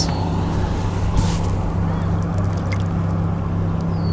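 Boat motor running steadily with a low hum, under rough wind noise on the microphone.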